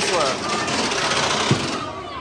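Ride vehicle's padded lap bar being pulled down against the rider, with one sharp knock about one and a half seconds in, over loud, steady loading-station noise and faint voices.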